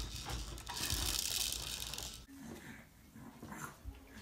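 A bright hiss-like rushing noise for about two seconds, then, after a sudden drop in level, the faint sniffing and breathing of a dog nosing at a baby.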